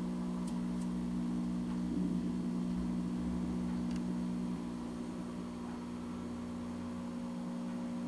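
A steady low electrical or mechanical hum made of several held pitches, with a few faint ticks over it.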